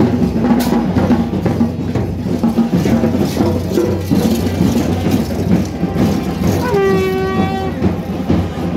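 A children's school marching band drumming on side drums with hand cymbals clashing, a dense, continuous percussion beat. A single held tone sounds for about a second near the end.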